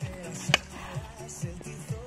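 A single sharp crack about half a second in: a homemade 100 cm pesäpallo bat striking the ball. Background music with a steady beat plays underneath.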